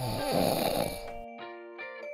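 A man snoring once, a rough breath lasting about a second, over light background music.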